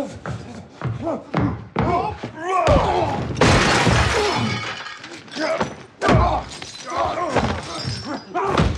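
Fistfight sound effects: repeated heavy blows and body thuds, with men grunting and yelling in strain. Glass shatters about three and a half seconds in.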